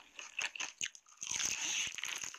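Biting and crunching through the crispy coating of a fried chicken drumstick: a few sharp crackles in the first second, then a dense, loud run of crunching from a little past halfway.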